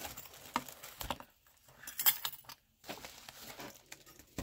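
Hands handling craft items taken from a mail package: scattered light clicks and small clinks, the sharpest about two seconds in, with brief quiet gaps between.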